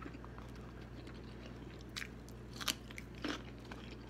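A person chewing a mouthful of boiled egg close to the microphone, giving a few faint, short, wet mouth clicks about two seconds in and again near three seconds, over a low steady hum.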